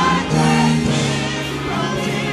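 Gospel church choir singing, sustained held notes with vibrato.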